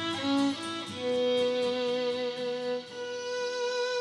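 Country music instrumental passage: a fiddle plays long held notes over band backing, with no singing.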